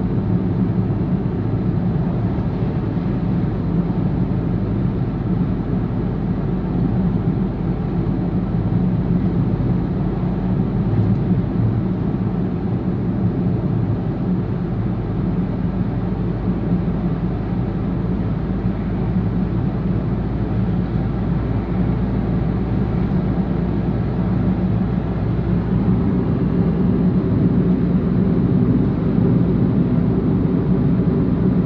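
Steady low rumble of tyres and engine heard from inside a moving car's cabin, unchanging throughout.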